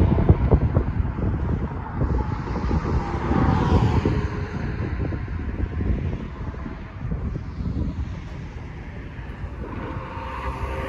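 Wind buffeting the phone's microphone in gusts, heaviest in the first second and again a few seconds in, over the hum of car traffic on the bridge road.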